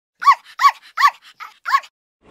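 A dog barking: four loud, short, high-pitched barks, each rising and falling in pitch, with fainter barks between them.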